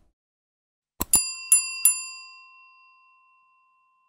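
Subscribe-button sound effect: two quick mouse clicks about a second in, then a small bell dinging three times in quick succession and ringing out.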